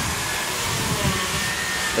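A steady rushing noise with a faint, thin, steady high tone running through it.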